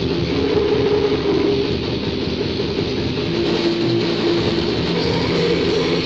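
Lo-fi raw black metal rehearsal recording: distorted guitars holding chords that change pitch every second or two over a dense, muddy wash of drums and cymbals.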